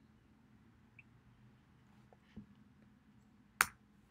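Quiet room tone broken by one sharp, short click about three and a half seconds in, typical of a computer mouse click advancing a slide.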